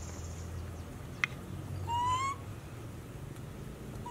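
A macaque gives one short, clear coo call about two seconds in, rising slightly in pitch. A single sharp click comes a little before it.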